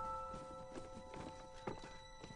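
Soft background piano notes held and fading out, over light scattered clicks and knocks of small objects being handled and packed into a cardboard box.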